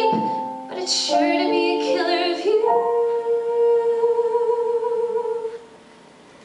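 A woman singing a musical-theatre song live with piano accompaniment: a few short sung phrases, then one long held note that stops about five and a half seconds in, leaving a brief quieter pause.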